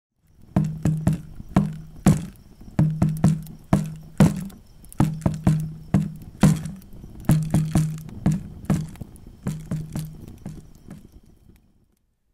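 Intro theme music: a low, pitched drum struck in a repeating rhythmic pattern, fading out near the end.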